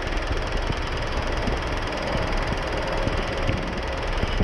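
Fendt RoGator self-propelled sprayer running through a ripe canola field while spraying: steady engine noise under a constant rushing hiss, with irregular low thumps.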